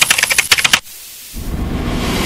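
A fast run of sharp clicks, about fifteen a second, lasting just under a second, like rapid keyboard typing. About a second and a half in, a steady rushing noise swells up and holds.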